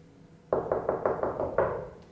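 Rapid knocking: a quick run of sharp knocks starting about half a second in, with a second burst starting near the end.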